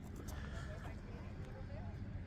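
Faint, distant chatter of bystanders over a low, steady background rumble.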